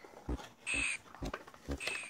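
A cardboard box sleeve and a clear plastic clamshell being handled and slid apart, giving scattered small clicks and two brief crinkling rustles.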